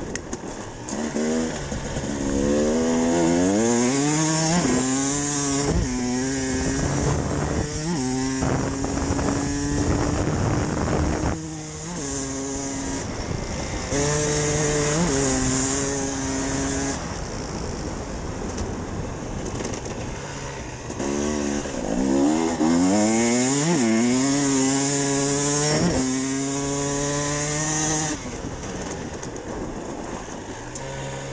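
Enduro motorcycle engine under hard acceleration, revs rising and dropping back again and again as it shifts up through the gears, then holding steady revs. Around the middle the throttle is briefly shut and the engine note falls, before it accelerates through the gears again.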